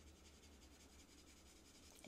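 Near silence: the faint rubbing of an alcohol marker's tip colouring on cardstock, over a low steady hum.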